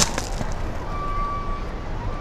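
Powerslide Kronos Reign inline hockey skates rolling over pavement and brick: a steady rolling noise, with a sharp click right at the start and a faint steady high tone in the middle.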